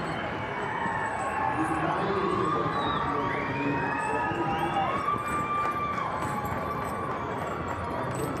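Crowd at the ringside cheering and whooping, many voices overlapping in long rising and falling shouts, as Welsh Cob stallions are run out at the trot.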